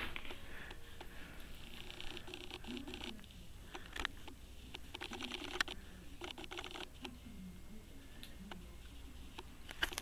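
Faint handling noise from a hand-held camera being moved in close: light rustling with scattered small clicks.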